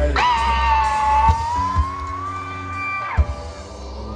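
A fan close to the recorder holds a long, high "woooo" for about three seconds, drifting slowly up in pitch and dropping away at the end, over a live rock band's slow ambient jam.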